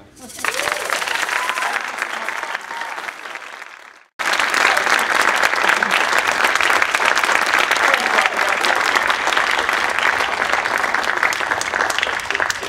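Audience applauding loudly in a hall, with a few voices calling out. The clapping cuts out completely for a moment about four seconds in, then comes back louder.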